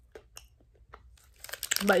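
Chewing on a bite of Twix ice cream bar: a few faint, scattered crunches and mouth clicks.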